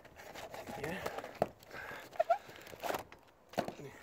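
Handling noise as a plastic tray and kitchen scales are moved about on a slatted wooden table: a few short, sharp knocks and clicks spaced out over the seconds.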